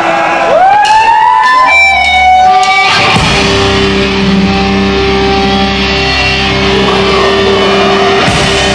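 Live rock band on stage, loud: an electric guitar slides up in pitch and rings out, then about three seconds in the full band comes in with guitars and a steady low rumble.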